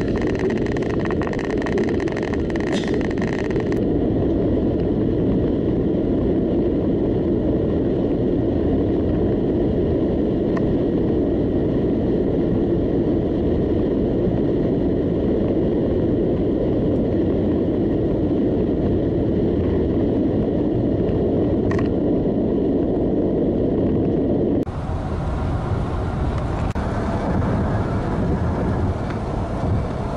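Steady road noise inside a car driving at highway speed: tyre and engine rumble with wind. About 25 s in the sound changes abruptly, becoming thinner and hissier with less low rumble.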